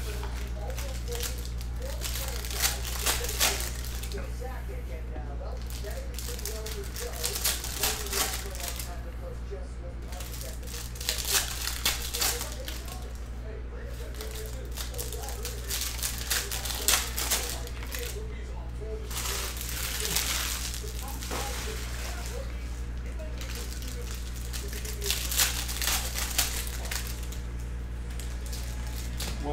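Foil trading-card pack wrappers crinkling and cards being handled and stacked, in irregular clusters of rustling, over a steady low hum.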